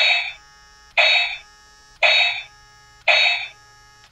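Small brushed DC motor from a toy fighting robot's punch drive, spun loose in the hand by the remote's punch button: four short whirs about a second apart, each starting suddenly and dying away quickly.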